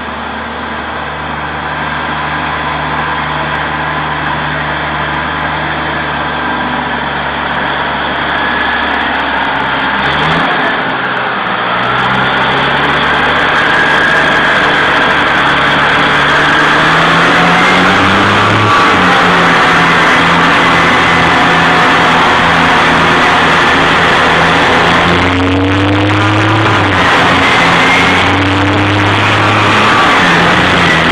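Diesel engine of a mine water truck approaching, growing steadily louder, its engine pitch stepping up and down several times.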